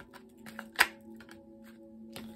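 A tarot deck being shuffled and handled, with a few light taps and one sharp card snap a little under a second in. Soft background music with steady held tones runs underneath.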